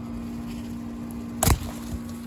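An eggplant being pulled off its plant by hand: a single sharp snap about one and a half seconds in, over a steady low hum.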